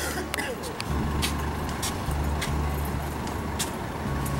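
Outdoor street ambience: a low, uneven rumble that comes and goes, with faint scattered clicks.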